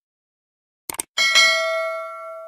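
A quick double mouse click, then a bright bell ding that rings on and fades: the click-and-bell sound effect of an animated subscribe button.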